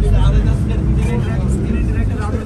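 Low, steady rumble of a tour vehicle's engine and running gear, heard from inside the cabin while it drives, with people talking over it.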